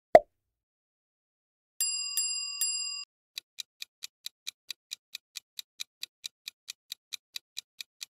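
Quiz sound effects: a short pop at the start, then a chime struck three times, then a countdown timer ticking evenly, about three ticks a second.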